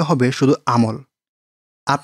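Narration only: a voice reading Bengali text, breaking off about halfway for a short pause of dead silence and starting again at the very end.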